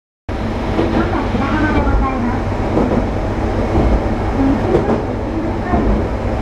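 Cabin of a Tosa Kuroshio Railway TKT-8000 diesel railcar under way: a steady low rumble of the engine and the wheels on the rails, with a drone that shifts in pitch.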